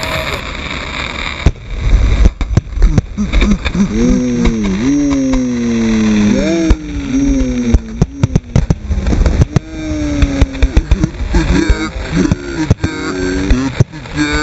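Fireworks shells launched and bursting at close range in a dense barrage, with rapid overlapping sharp bangs from about a second and a half in. A drawn-out voiced call falls in pitch in the middle, and more short shouts come near the end.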